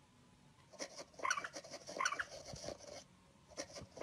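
A cat game on a tablet giving short squeaky bursts, with a cat's paws tapping and swiping on the touchscreen. The taps come in quick clusters, with squeaks about a second and two seconds in and again at the very end.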